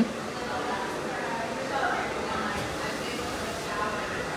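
Faint voices talking in the background over steady room noise.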